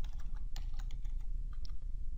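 Computer keyboard being typed on: a short, irregular run of key clicks.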